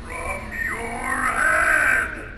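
Spirit Halloween Possessed Pumpkin animatronic's recorded monster voice, a drawn-out gliding growl from its speaker that grows louder in the second half, over a faint thin high whine.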